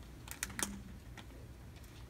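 A few short, sharp clicks, unevenly spaced, in the first part of a quiet pause.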